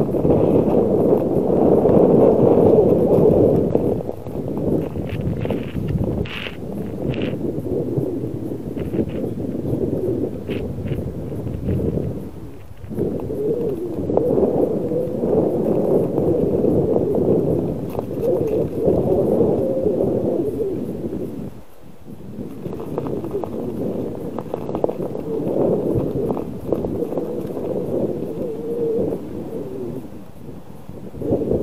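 Bicycle tyres rolling over bumpy, snow-covered frozen sea ice: a steady rough noise that dips briefly twice, with a few sharp clicks in the first half.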